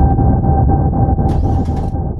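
Spaceship engine sound effect: a loud, low rumble with a steady hum above it, slowly fading, and a brief hiss about one and a half seconds in.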